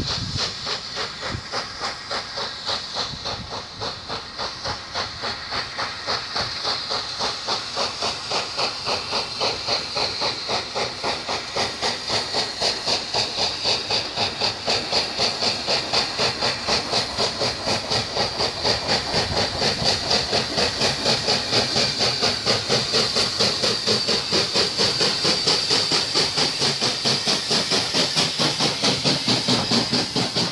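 USA Transportation Corps S160 2-8-0 steam locomotive working a passenger train towards the listener, its exhaust beating in a fast, even rhythm over a constant hiss of steam, growing steadily louder as it approaches.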